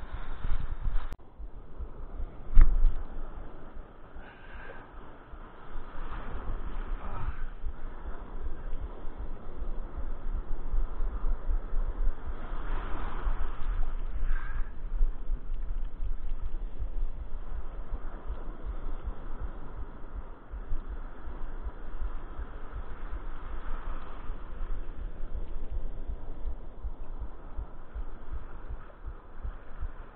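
Breaking surf and sea water churning around a camera held at the water's surface: a continuous rush with a deep rumble that swells and eases. There is one loud knock about two and a half seconds in.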